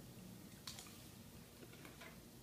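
Near silence: room tone, with one faint click about two-thirds of a second in and a couple of fainter ticks near the end.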